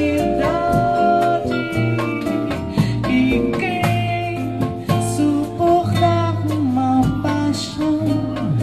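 A live Brazilian jazz band playing a bossa nova, with guitar, bass, vibraphone and drums, and a woman's voice singing over it.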